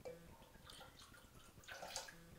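Whiskey being poured from a bottle into a cocktail shaker, a faint liquid pour, with a brief sharper sound near the end.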